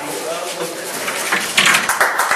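Applause breaking out about one and a half seconds in, over people talking in a room.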